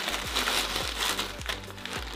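Plastic Hefty zipper bag of crushed corn chips crinkling as it is handled, louder in the first second, over background music with a steady low beat.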